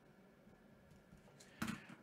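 Near silence: quiet room tone, then a brief vocal sound from a man about a second and a half in, just before he speaks.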